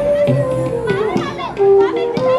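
Bansuri (bamboo transverse flute) playing long held notes in an Indian classical piece, with tabla strokes underneath. A burst of voices, like children calling out, comes through around the middle.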